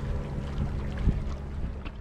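Wind rumbling on the microphone over water sloshing against jetty rocks, with a couple of faint knocks.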